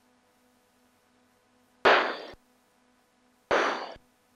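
Two short bursts of radio static, each starting sharply and cut off abruptly after about half a second, about two seconds in and near the end, over a faint steady electrical hum with a low pulsing tone.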